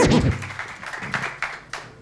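Studio audience applauding briefly, the clapping dying away over a second or so.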